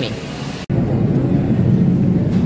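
A steady, loud rumbling roar. It cuts out abruptly for an instant about two-thirds of a second in, then comes back slightly louder.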